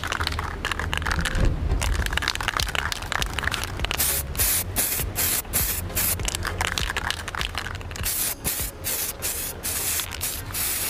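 Aerosol spray can of Samurai metallic black paint hissing in short bursts with brief gaps between passes as the third coat goes onto a motorcycle fairing. The hiss is louder and more broken-up from about four seconds in. A low bump of handling comes about a second and a half in.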